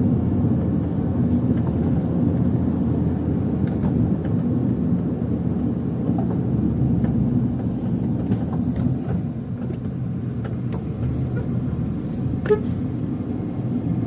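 A car being driven along a city street: steady low rumble of the engine and the tyres on the road, with no sudden events.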